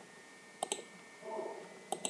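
Clicking on a computer: two short clicks about a second apart, each a quick pair, with a brief faint murmur between them.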